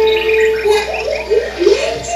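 Cartoon soundtrack: a held note for about half a second, then a run of quick sliding pitches, music mixed with an animated character's vocal sounds.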